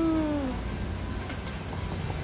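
A baby's short whiny vocalisation: one falling, meow-like cry of about half a second at the start, then a low steady background hum.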